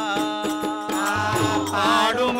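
Devotional bhajan singing (Pandarinath tattvalu) by a group of men, a sung line wavering in pitch over a harmonium. Hand cymbals (talam) strike about four times a second, and tabla strokes come in a little over a second in.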